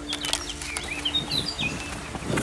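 A small songbird chirping: a quick run of short, high notes that glide up and down.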